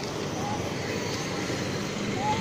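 Steady street traffic noise, an even hum and hiss with no clear events, and one faint short high sound about a quarter of the way in.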